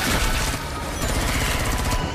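Film action soundtrack: rapid automatic gunfire with dramatic score music underneath.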